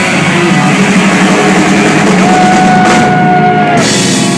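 Live rock band playing loud, with electric guitar and drums. A long held note starts about two seconds in and stops just before the end.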